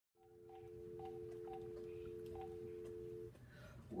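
A steady electronic telephone tone, held for about three seconds and then cut off, with faint short beeps above it.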